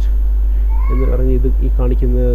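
A man's voice, a few words or a drawn-out vocal sound with a brief rise in pitch, over a loud, steady low electrical hum that runs under the whole recording.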